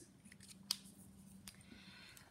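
Faint handling clicks from a pen and spiral notebook, two sharper ones about a second apart, over a low steady hum.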